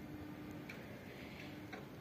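Quiet background with a faint steady hum and a couple of soft ticks, about a second in and near the end.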